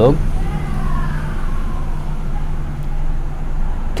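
Background road-vehicle noise: a steady low engine hum, with a faint falling whine in the first couple of seconds.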